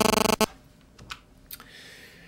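A few clicks on a computer keyboard: one sharp click about half a second in, then two fainter clicks about a second and a second and a half in.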